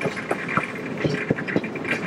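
Excursion train running on the rails, heard from aboard: irregular clanks and rattles several times a second over a steady high-pitched hiss.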